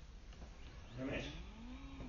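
A person's voice: a short syllable about a second in, then a long drawn-out vowel sound whose pitch rises and then falls, without clear words.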